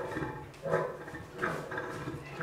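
Lions calling: short, pitched calls repeated about every three-quarters of a second.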